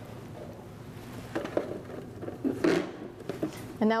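A few light knocks and scuffs of a cardboard shipping box being handled on a lab bench, with a quiet room background.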